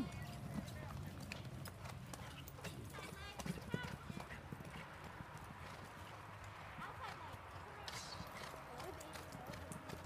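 Horse hoofbeats on the soft dirt of an arena, scattered uneven thuds with the sharpest one a little before halfway.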